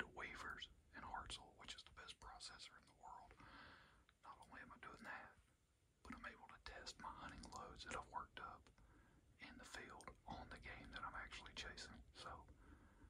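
A man whispering in short phrases, with a brief pause a little before halfway through.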